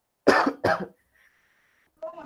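A person coughing twice in quick succession, heard over a video-call connection.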